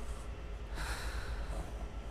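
A single sharp, noisy intake of breath about three quarters of a second in, over a steady low hum.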